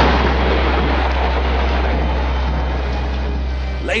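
A thunder sound effect: a long, loud rumble that slowly fades, over a deep steady drone in the music.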